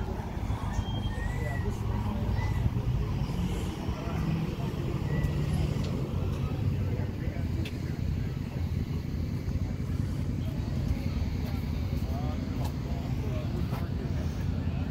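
Street background noise: a steady low rumble of road traffic.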